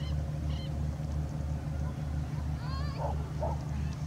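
A motor running with a steady low throb, pulsing about four to five times a second, like a boat engine. Near the end, birds call over it: a quick run of rising and falling notes, then two short yaps.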